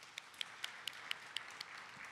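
Audience applauding, with one nearby pair of hands clapping distinctly over it at about four claps a second.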